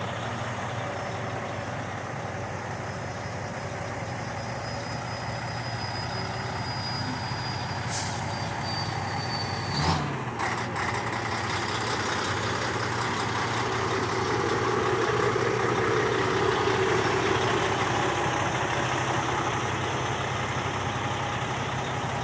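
Heavy diesel truck engine idling steadily, with a short knock about ten seconds in.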